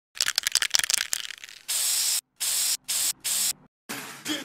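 An aerosol spray-paint can shaken, its mixing ball rattling fast, then four short sprays of hissing paint, the first the longest.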